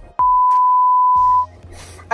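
A single steady electronic beep at one pitch that starts abruptly and lasts a little over a second. It is the plain tone commonly edited in as a censor bleep.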